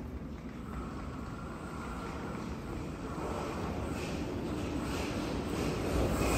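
Railway station ambience: a steady low rumble of train noise, with a faint thin whine near the start. It grows louder and hissier over the second half.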